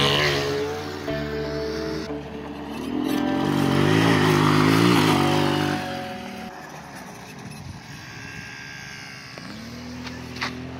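Small engines of a mini ATV and a go-kart buggy revving as they ride over dirt, the note rising and falling, loudest about four to five seconds in and fading after about six seconds. Background music plays throughout.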